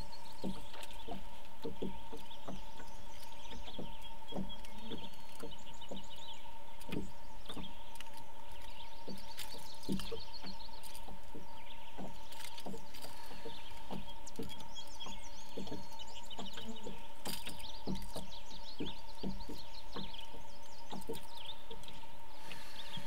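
Small birds chirping and twittering over a steady high-pitched hum, with scattered light clicks and knocks throughout.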